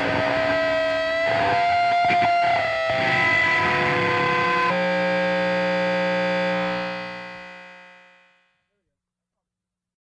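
Distorted electric guitar chord left ringing after the band cuts off, with a sustained high tone that bends slightly upward. The chord shifts a little under five seconds in, then fades away at about eight seconds.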